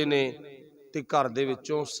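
Speech only: a man talking in Punjabi, with a short pause about half a second in before he goes on.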